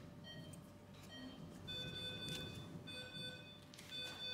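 Electronic monitor beeping: short high beeps about once a second, joined after about a second and a half by a longer, lower beep tone repeating at a similar pace.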